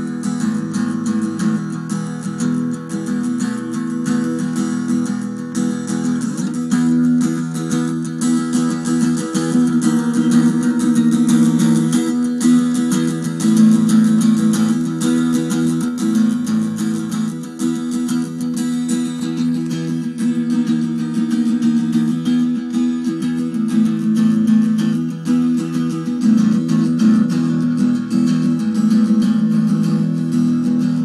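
Live song played on a strummed acoustic guitar, recorded through a bad sound system: the guitar is far too loud in the mix and the unmiked vocals can barely be heard.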